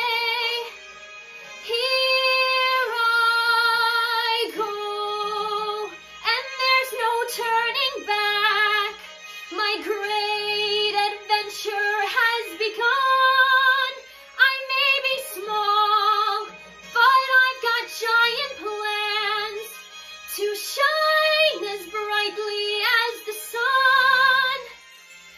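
A young woman singing a musical-theatre solo unaccompanied or nearly so, in phrases of long held notes with vibrato and short breaks between them.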